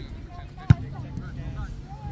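A soccer ball struck once, a single sharp thud about two-thirds of a second in, with players' voices in the background.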